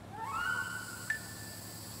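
Faint cartoon background music: a soft rising note that settles into a held tone, with a small click about a second in.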